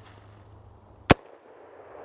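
A single sharp rifle shot about a second in, from an unsuppressed AR-15. Its Gemtech bolt carrier is on the suppressed setting, so the carrier cycles with reduced velocity on this shot.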